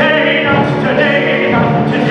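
A stage-musical ensemble singing in harmony over instrumental accompaniment.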